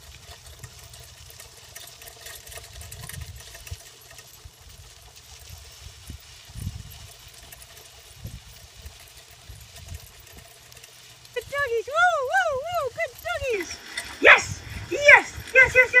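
Low rumble and irregular thumps of a dog-drawn sulky rolling along a dirt road. About eleven seconds in, a high wavering call rises and falls four or five times, and a voice starts near the end.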